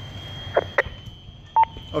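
Two faint clicks, then a short single beep about one and a half seconds in, from a two-way fire radio in the gap between transmissions.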